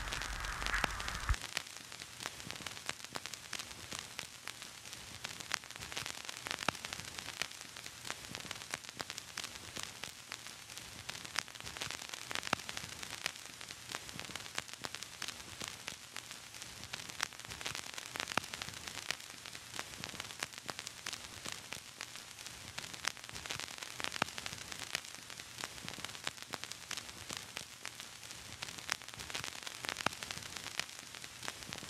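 Steady static hiss dotted with frequent faint pops and crackles, like the surface noise of old film or a worn record. A low hum underneath cuts off about a second and a half in.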